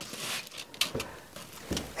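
Faint rustling of emery cloth and masking tape pressed and folded over by hand, with a few light ticks.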